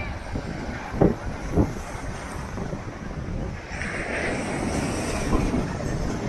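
Wind rumbling on an action camera's microphone, with surf washing on the shore. There are two brief thumps between one and two seconds in, and a hiss swells about four seconds in as a wave breaks.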